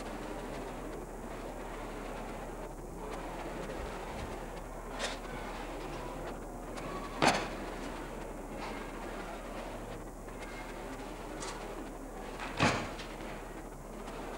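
Steady background noise broken by four sharp knocks. The two loudest come about halfway through and near the end.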